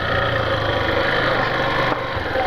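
Yamaha Factor 150's single-cylinder four-stroke engine running steadily at low revs as the motorcycle rolls slowly.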